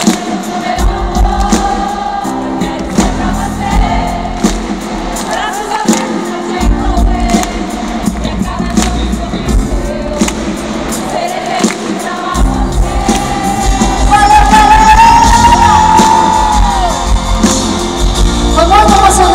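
Live band music heard from within the audience, with a steady beat and bass under a singing voice. The voice holds a long note near the end, where the music is loudest.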